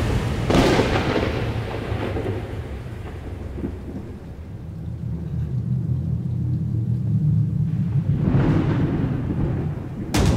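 A dramatic low rumble of film sound design: a sudden boom about half a second in, then a deep sustained rumble that dies down through the middle and swells again near the end.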